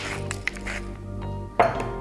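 Soft background music, with a pepper mill grinding briefly near the start.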